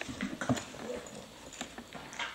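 A bulldog and a corgi at play: a few short, low dog noises in the first half-second, among scattered light clicks and scuffles.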